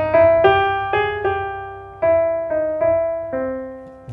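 Piano playing a short bluesy phrase drawn from the five-note set C, E-flat, E, G and A-flat over a held C major chord. Single notes are struck every half second or so and left to ring and fade, and the last one dies away near the end.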